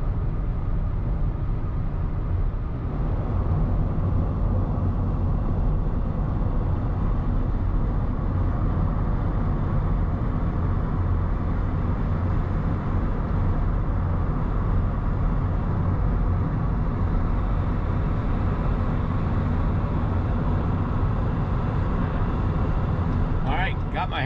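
Steady road noise inside a moving car's cabin: tyres on the pavement and the engine making an even, low-heavy hum at highway speed.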